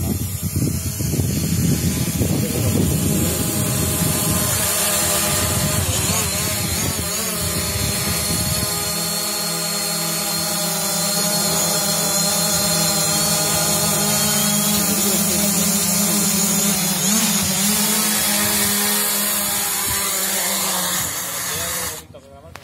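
DJI Mavic quadcopter's propellers buzzing loudly while it hovers close by, a steady whine of several tones wavering slightly in pitch, with a low rumble in the first few seconds. Near the end it lands, and the motors stop and the sound cuts off.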